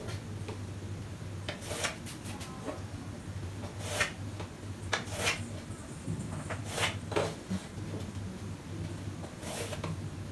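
Chalk scraping on a chalkboard in short strokes drawn along a ruler, laying in parallel hatching lines: about eight brief scratches at irregular intervals, over a steady low hum.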